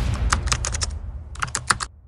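Typing sound effect: a quick run of key clicks in the first second and a second run about a second and a half in, over a low rumble.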